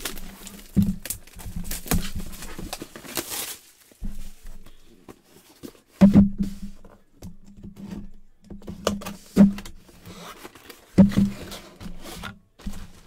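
Plastic shrink-wrap crinkling and tearing as it is stripped off a cardboard box, with a burst of tearing about three seconds in. Then the box is handled and its lid opened, giving several dull thumps, the loudest about halfway through and near the end.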